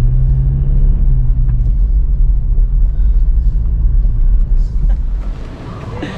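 Low road rumble of a moving car heard from inside the cabin, with a steady low hum in the first second or so. The rumble cuts off abruptly about five seconds in, leaving quieter outdoor background.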